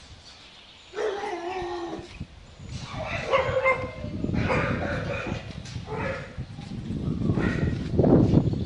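Dogs in kennels barking and whining in drawn-out, high-pitched cries that start about a second in. From about three seconds on, several cries at different pitches overlap.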